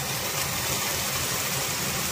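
Steady hiss over a low hum from a clay pot of onions frying on an induction cooktop as coconut paste is poured in.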